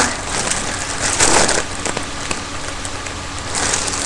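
Rushes of breathy, hissing air and crinkling foil from a mylar helium balloon held at the mouth as helium is breathed in from it, with a stronger rush about a second in and another just before the end.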